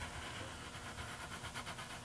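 Pencil lead drawing an arc across a thin wood cutoff, a faint scratching over low room hum.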